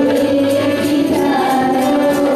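Devotional hymn sung by a group of voices in long held notes over steady light percussion.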